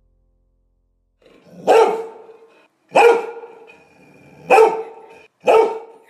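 A dog barking four times, about a second apart.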